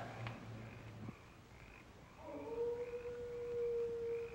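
A hound's long, drawn-out howl, the baying of the film's hound, starting about two seconds in on one steady pitch and growing louder. Faint short chirps repeat about twice a second behind it.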